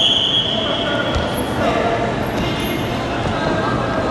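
The bout's start signal, a steady high whistle-like tone, trails off in the first second or so. It leaves the noise of a sports hall with indistinct voices and one low thump about a second in.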